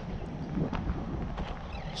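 Wind buffeting the microphone as a steady low rumble, with about four faint footsteps on gravelly ground.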